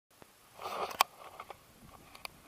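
Close-up handling noise at a camera: a short rustling hiss, then one sharp click about a second in, followed by a few faint ticks.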